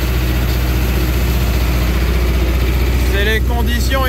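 Tractor engine running steadily, heard from inside the cab as the tractor pulls a crop sprayer across the field.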